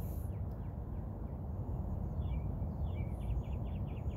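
Outdoor ambience: a steady low rumble, with a small bird chirping a quick run of short, slightly falling notes in the second half.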